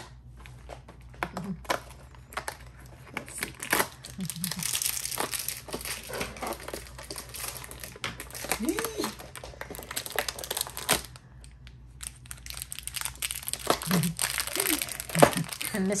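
A crinkly plastic wrapper being crumpled and torn open by hand to free a small toy figure, with dense crackling and sharp snaps that pause briefly before starting again.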